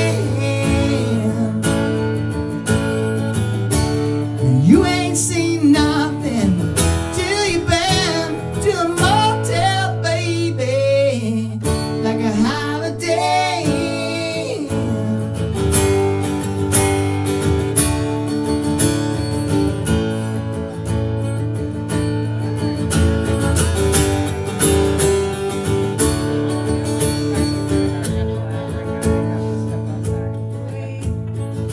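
Live strummed steel-string acoustic guitar with a man singing over it. The singing mostly drops out about halfway through and the guitar strumming carries on.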